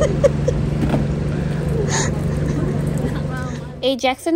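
Steady low engine hum with faint chatter over it; it cuts off abruptly just before the end.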